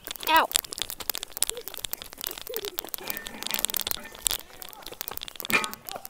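Rustling, clicking handling noise from a phone carried on the move, with short wordless vocal sounds about half a second in and again near the end.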